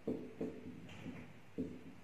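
Marker writing on a whiteboard: a few light taps of the tip against the board, with a short higher-pitched scratch of a stroke about a second in.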